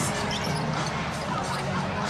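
A basketball being dribbled on a hardwood court over the steady background noise of an arena crowd.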